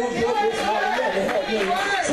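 Speech only: voices talking, with what sounds like more than one person at once.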